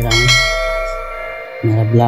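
Bell-ding sound effect of a YouTube subscribe-button and notification-bell animation: one sudden strike that rings on and fades away over about a second and a half.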